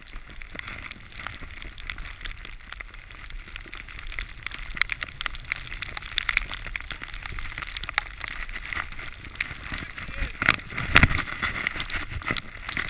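Skis sliding and carving over snow: a continuous hiss with frequent short scrapes and crunches from the edges, growing louder in the second half with a sharp scrape about eleven seconds in. Wind rushes over the microphone.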